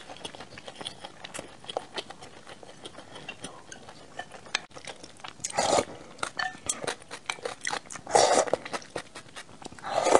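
Close-miked eating sounds: wet chewing and lip smacks as a run of small clicks, with two loud slurps of soup from a wooden spoon a little past halfway and again later, and another starting right at the end.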